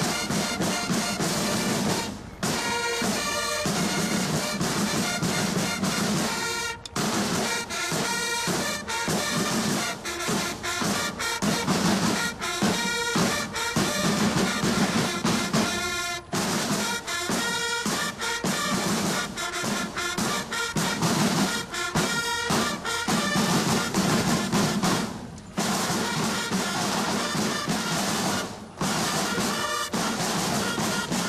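A military marching band playing a march, with brass carrying the tune over snare drums. The music drops out briefly a few times.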